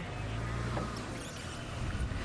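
Open safari game-drive vehicle's engine idling: a steady low hum.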